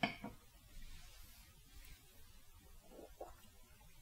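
A short, soft knock of a Glencairn glass being set down on a coaster, followed by a few faint small sounds in an otherwise quiet room.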